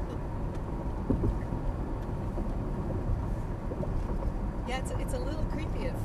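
Steady road and tyre rumble inside the cabin of a Cadillac SRX cruising at about 48 mph, with a brief voice about five seconds in.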